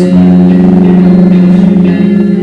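Live solo song on an acoustic guitar, with a long steady sustained note held loudly through.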